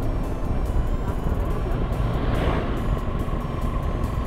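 Motorcycle riding along an open road at a steady speed: engine running under a heavy, even rush of wind on the microphone.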